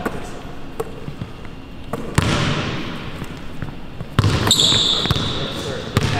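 Basketball bouncing on a hardwood gym floor, with scattered sharp knocks and two louder impacts that ring on in the hall, about two seconds in and again about four seconds in. A brief high squeak follows the second impact.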